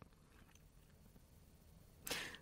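Near silence: a pause between sentences of audiobook narration, with only faint room tone.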